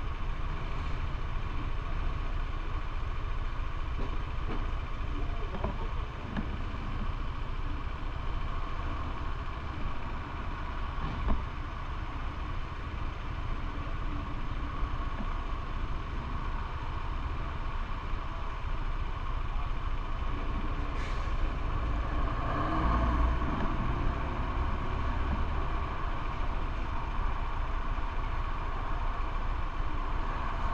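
Steady low rumble of vehicle engines waiting at a red light, with a single short knock about eleven seconds in and a slight swell around twenty-three seconds.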